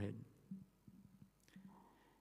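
A man's amplified voice finishing a phrase, then a quiet pause with faint murmured voice sounds and a soft click about one and a half seconds in.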